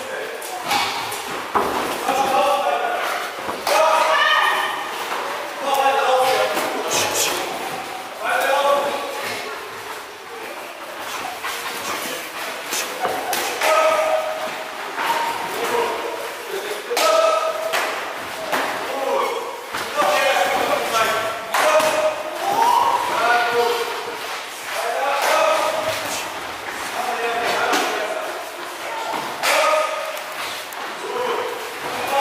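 Gloved punches and kicks thudding and slapping on gloves and guards during kickboxing sparring, with many voices calling out, echoing in a large training hall.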